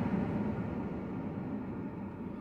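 Low, steady rumble of background noise inside a car cabin during a pause in speech, slowly fading.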